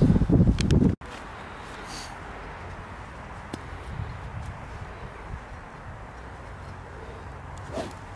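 Men's voices for about a second, then an abrupt cut to a steady, faint outdoor background hiss with a few faint clicks and a short pitched sound near the end.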